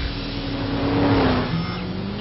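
A car engine revving hard, its pitch rising slightly and growing loudest about a second in before easing off.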